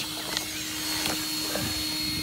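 A few light knocks and rattles as the FTX Outlaw RC car is lifted and turned over by hand to look at a snapped part underneath, over a steady low hum.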